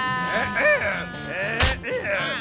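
Cartoon background music with held notes under a character's wavering, wordless vocal cry, and a sharp hit sound effect about one and a half seconds in.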